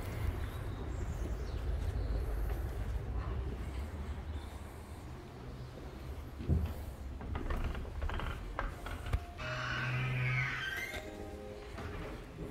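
A pair of heavy wooden entrance doors being pushed open and walked through: a low rumble of handling and movement, a sharp knock about six and a half seconds in, and a few clicks. Faint music with steady tones comes in near the end.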